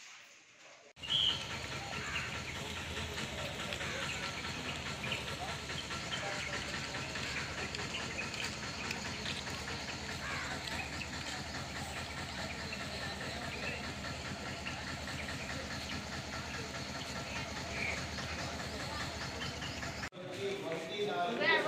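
Steady background noise with faint, indistinct voices, starting abruptly about a second in.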